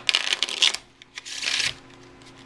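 Deck of playing cards being riffle-shuffled: a rapid crackle of cards flicking off the thumbs for under a second, then a second, shorter burst of card noise about a second later.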